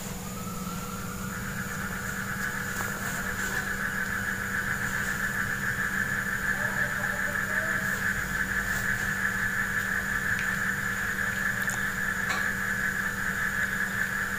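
A steady high-pitched mechanical whine that starts just after the beginning, steps up in pitch about a second in, and slowly grows louder, over a constant low hum.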